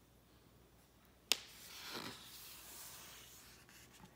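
A single sharp click about a third of the way in, then the faint swish of a picture book's paper page being turned by hand.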